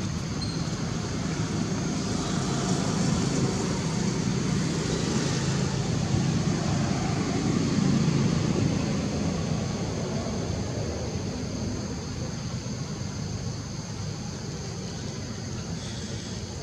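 Engine noise of a motor vehicle passing in the background: a low rumble that grows louder to about halfway and then fades away.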